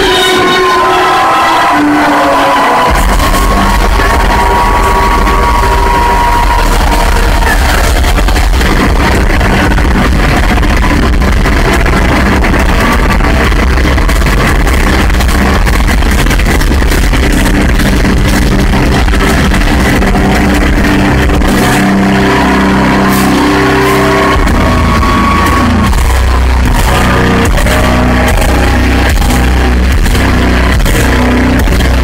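Heavy metal band playing live and loud through the venue PA, with distorted guitars, drums and vocals. The bass end drops out for the first three seconds or so, then the full band comes back in.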